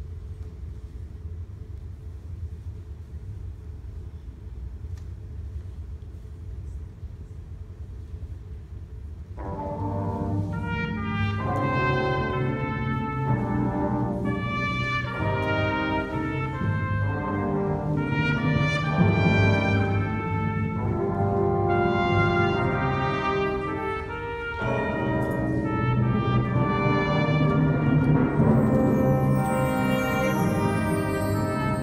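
A low steady background hum. About nine seconds in, a marching band's brass section comes in much louder with held, full chords that change every second or two.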